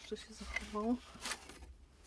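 Faint rustle of cloth and light handling noise as old clothing is laid back on a wooden wardrobe shelf, with a brief low voice sound a little under a second in.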